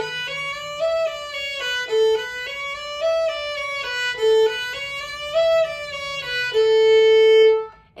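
Violin playing a five-note scale on the A string, open A up to the fourth-finger E and back down, three times over with eight notes slurred to a bow. It ends on a held open A that stops just before the end.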